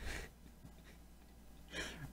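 Quiet room tone with a low steady hum, broken near the end by a man's short breathy laugh.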